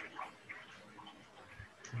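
Faint background noise over a call connection, with scattered small clicks and brief faint noises.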